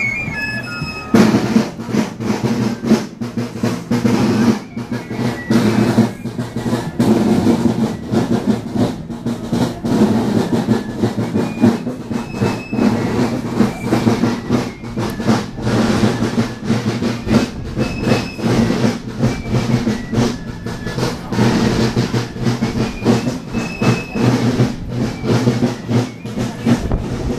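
Fife melody, then marching drums of a folkloric march corps come in suddenly about a second in and keep up a dense, continuous rolling beat, with faint fife notes now and then above it.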